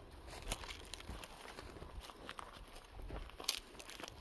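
Faint footsteps and rustling on dry, short grass, with a few sharp clicks at irregular moments.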